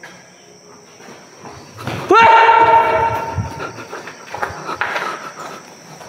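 A person lets out a loud, drawn-out yell about two seconds in: the pitch rises sharply, then holds for over a second and fades. A faint high steady whine and a few light knocks run underneath.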